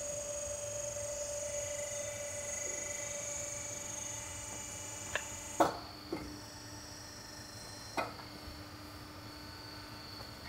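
Steady electrical hum with a thin high whine from factory machinery at a frame-testing press. About halfway through the tones shift with a sharp metallic knock, and a couple more clicks follow.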